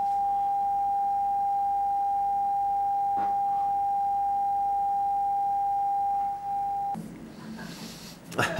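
Television test-card tone: a steady single-pitch sine tone playing with the colour-bar test pattern, the sign that the channel has closed down for the night. It cuts off abruptly about seven seconds in.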